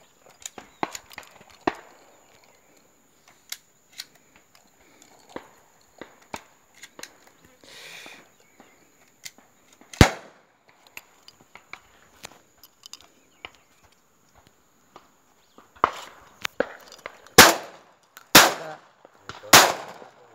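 Shotgun shots during dove shooting: one loud shot about halfway through, then three quick shots near the end, with fainter shots scattered between.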